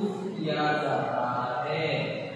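A man's voice speaking in drawn-out, sing-song phrases, held on long sustained syllables.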